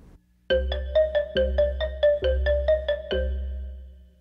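A short musical jingle marking a section change: a quick run of bright repeated notes, about five a second, over four low bass notes. It starts half a second in and stops about three seconds in, ringing out briefly.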